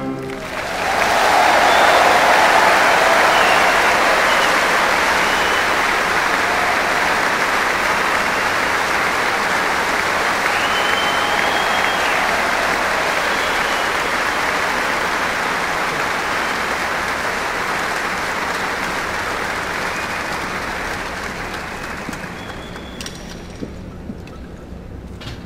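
Music stops right at the start, then a large arena audience applauds, with a few faint whistles, the applause slowly dying down toward the end.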